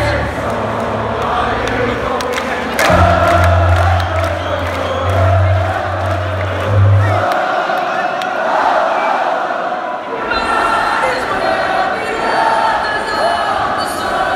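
Electronic dance music from a DJ set playing loud over the venue's sound system, with the crowd cheering and singing along. A heavy bass line stops about seven seconds in, and the low end comes back near ten seconds.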